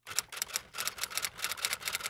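Typewriter sound effect: a quick run of key strikes, about seven a second, that stops abruptly near the end.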